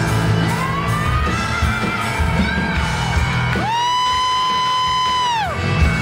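Live rock band playing with a woman singing into a microphone. About three and a half seconds in, the band drops out under one long, high sung note that bends down as it ends, and the band comes back in near the end.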